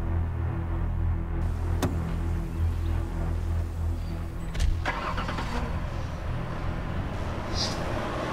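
A low, steady music drone runs underneath; about two seconds in there is a sharp click, and just past halfway a sharp knock followed by about a second of engine noise as a Toyota pickup truck's engine is started.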